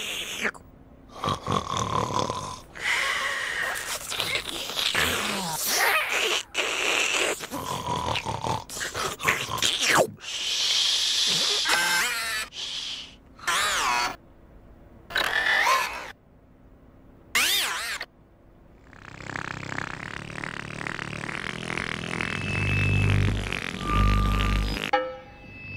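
A string of short, separate snoring and grunting noises, some rising and falling in pitch, with short gaps between them. Keyboard music comes in about five seconds before the end.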